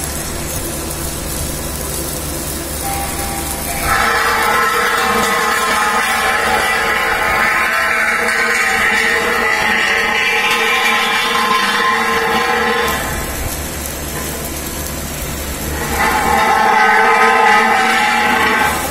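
Loud factory noise: a steady whine or horn of several held tones sounds from about four seconds in for roughly nine seconds, and again near the end, over a low machine hum.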